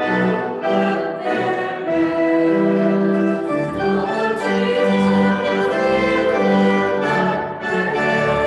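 A woman singing a slow hymn along with instrumental accompaniment, each note held for about a second.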